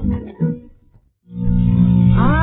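Hindustani music accompaniment from a 1931 shellac 78 rpm record dies away under a second in, the end of the first side. After a brief silence the second side begins with a steady sustained instrumental chord.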